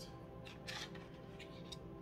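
Soft background music, with a tarot card being drawn off the deck and flipped onto the table: brief papery swishes about half a second in and again near the end.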